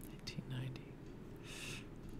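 A man whispering faintly under his breath, with a short soft hiss about one and a half seconds in.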